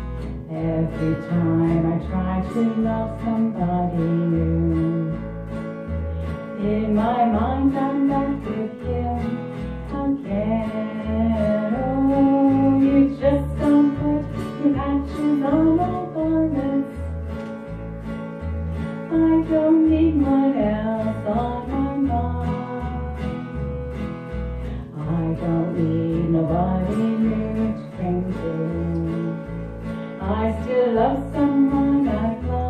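A woman singing a country song over a strummed acoustic guitar, with a bass guitar playing a steady line of low notes.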